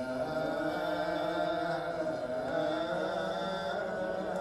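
Theravada Buddhist monks chanting together in long, drawn-out notes, amplified through a hand-held microphone, as part of a Cambodian funeral chant for the dead.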